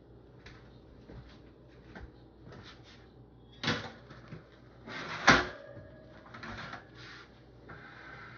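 A metal sheet pan clattering as it is set down on a wire cooling rack: light clicks of handling, then a sharp metallic knock about three and a half seconds in and a louder one just after five seconds, followed by brief rustling.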